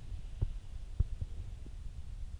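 Wind rumbling on a phone microphone, with four dull low thumps in the second half-second to middle, the loudest about a second in.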